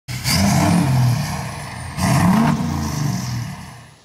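Ford Super Duty pickup's Power Stroke diesel engine revved twice through its side-exit exhaust, the second rev about two seconds after the first, then dying away.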